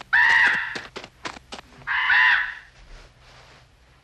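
A crow cawing twice: two loud, harsh caws, each about half a second long, the first right at the start and the second about two seconds in.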